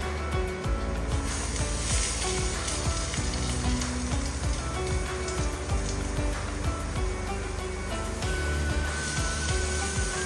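A slice of bread sizzling as it fries in a pan, starting about a second in and easing near the end, over background music.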